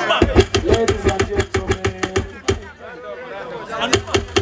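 Voices through a PA system over a fast run of sharp percussive hits and low bass pulses. The sound thins out from about two and a half seconds in, then picks up again near the end.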